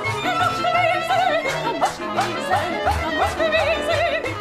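A woman singing operetta in a high soprano with wide vibrato, moving into short, quick notes about halfway through, over an instrumental accompaniment with a steady bass.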